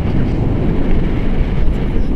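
Wind noise from the air rushing past a tandem paraglider in flight, buffeting the selfie-stick camera's microphone: a loud, steady low rumble.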